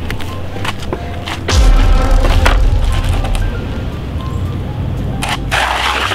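A makeshift board sled scraping and clattering down a rough concrete ditch slope, with many sharp cracks and a loud low rumble starting about one and a half seconds in. Background music plays under it.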